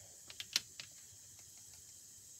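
A few light clicks and taps of a paintbrush and small paint palette being handled on a craft tabletop, the loudest a little over half a second in.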